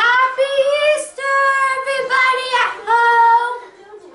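A child's high voice singing out a drawn-out "Happy Easter" sign-off in four long held notes, stopping shortly before the end.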